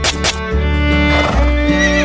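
Background music with a horse whinnying over it from about a second in, its pitch quavering up and down.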